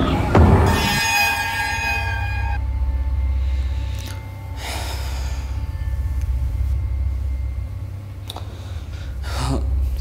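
Horror-film sound design: a low heavy hit, then a high shimmering sting of several sustained tones for about a second and a half, giving way to a steady low drone. A few short breathy gasps come over the drone.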